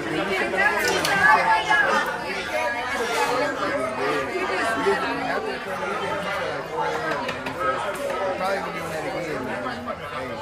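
People talking and chattering, several voices overlapping in a large, busy room.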